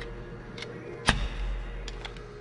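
Metal knock of a roller cam follower being pushed down into its bore in a Caterpillar 3406 diesel block. There is one solid knock about a second in, with lighter metal clicks before and after it.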